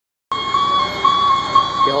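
A steady, high-pitched electronic warning tone sounds from the fire apparatus over low street noise, and a man's voice comes in right at the end.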